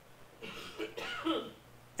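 A person coughing quietly and clearing their throat, from about half a second in to about a second and a half.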